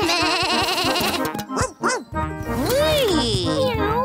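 Cartoon children's voices calling "wheee" in long rising-and-falling glides, one after another as they go down a slide, over cheerful children's background music with a steady beat that comes in about halfway through.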